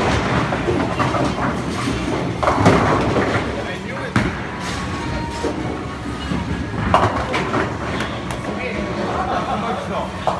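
Bowling alley: a bowling ball rolls down a lane with a continuous rumble, with a clatter of pins being struck about two and a half seconds in and more pin crashes a few seconds later, over voices in the background.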